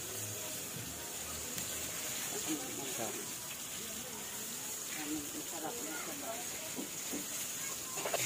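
Gas stove burner hissing steadily under a pot of water that is heating but not yet boiling, with faint voices in the background.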